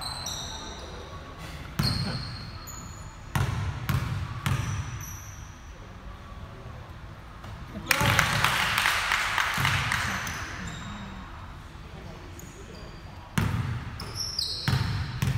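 A basketball bouncing on a hardwood gym floor, a few separate thuds as a player readies a free throw, with short sneaker squeaks. About eight seconds in comes the loudest sound, a burst of noise that fades over two to three seconds, then another bounce near the end.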